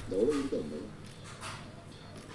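A man's short hummed 'mm-hmm', two quick voiced syllables with a bending pitch in the first second.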